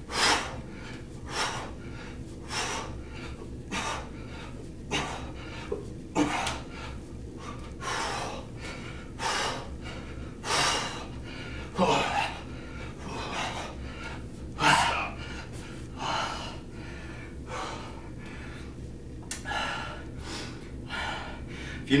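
A man's sharp, forceful breaths exhaled in time with two-handed kettlebell swings, about one a second, with hard breathing from the exertion in between.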